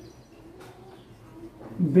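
Faint, low cooing of a bird in the background.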